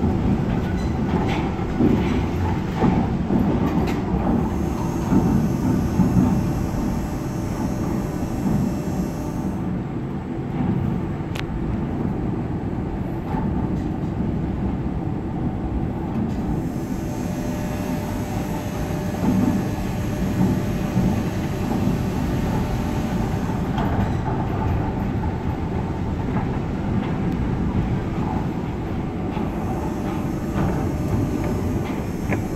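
Düsseldorf Airport SkyTrain (H-Bahn) suspended monorail car running along its overhead guideway, heard from inside the car. Its running gear makes a steady rumble that rises and falls only slightly.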